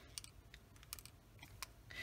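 Near silence with a few faint clicks as small plastic alcohol ink bottles are handled.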